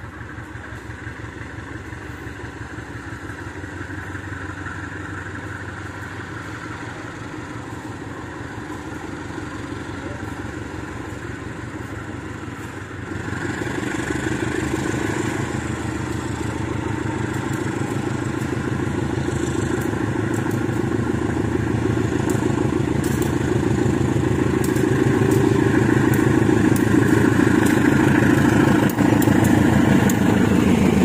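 GE CC203 diesel-electric locomotive pulling a passenger train out of a station, its diesel engine running under load. It grows steadily louder as it approaches, with a jump in loudness about 13 seconds in.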